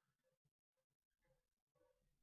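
Near silence: digital silence between narration, with no audible sound.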